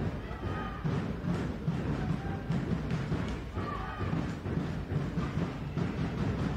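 Handball fans' drums beating a steady rhythm of about two strokes a second in the stands, with crowd voices over them.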